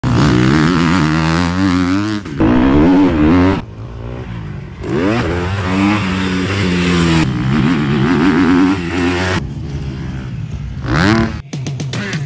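Motocross bike engine revving up and down as it is ridden, in short segments that cut off abruptly every one to two seconds, with a sharp rising rev about a second before the end.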